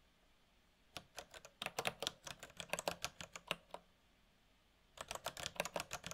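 Computer keyboard typing in two quick runs of keystrokes, the first starting about a second in and lasting nearly three seconds, the second near the end after a short pause.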